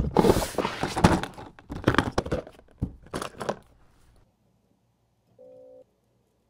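Laundry being handled, with knocks, thumps and rustling for the first three and a half seconds. Near the end comes a short electronic beep from the laundry machine, a single tone lasting about half a second.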